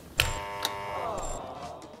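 A sharp click, then a game-show buzzer tone that slides down in pitch and fades: the 'wrong' signal marking a red flag.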